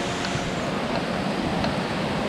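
Steady rush of running water from spring-fed pools and a small cascade.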